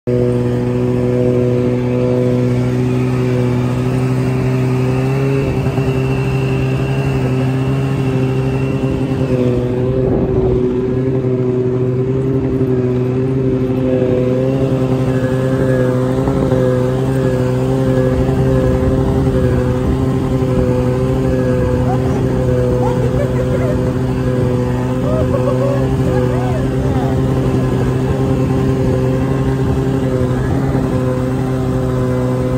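Snowmobile engine running at a steady speed while being ridden, its pitch holding nearly constant throughout.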